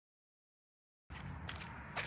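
Dead silence for about a second, then low, steady outdoor background noise with a low rumble, cutting in suddenly, and one faint click. The power washer itself is not heard.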